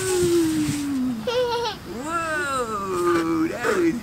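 Excited wordless voices cheering a toddler coming down a playground slide. One long call slowly falls in pitch over about the first second, then several shorter calls rise and fall.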